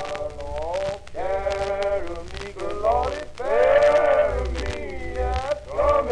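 Male voice singing a gospel song, long held notes that bend in pitch, in phrases of a second or so, over a low hum.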